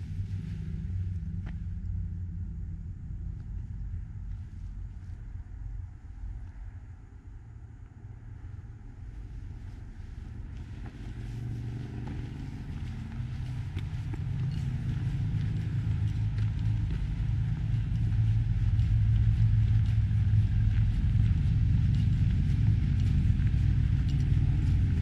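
Wind buffeting the microphone, a low rumble that grows louder over the second half.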